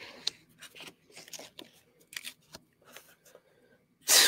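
Pages of a book being leafed through: faint, irregular paper rustles and flicks, the sharpest about a quarter second in.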